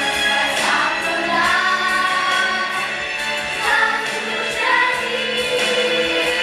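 Music for a dance, with a choir of voices singing a sustained melody over the accompaniment.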